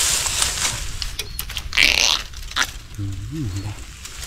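Dry bamboo twigs and leaf litter crackling and snapping as wild bamboo shoots and dry branches are handled in a thicket, with a short hissing rustle about two seconds in. A brief hummed voice sound comes near the end.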